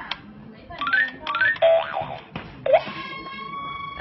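Electronic sound effects from a Winfun crawling-crocodile toy's memory game: a quick run of rising boing-like sweeps, then a held steady beep near the end. This is the toy's warning sound that a button was pressed in the wrong order.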